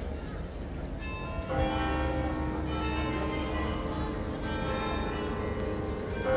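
The Belfry of Bruges' carillon ringing a tune: bells come in about a second in and ring on, several notes overlapping as new strikes follow every second or so.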